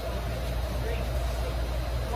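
Passenger train running, heard from inside the carriage as a steady low rumble.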